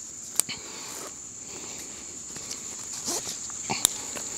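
Crickets trilling steadily on one high note, with a few small clicks and rustles from the climbing tether rope and harness being handled; the sharpest click comes near the end.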